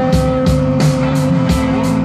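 Live rock band playing an instrumental passage: distorted electric guitars with one long held note over a moving bass line and a steady, driving drum beat.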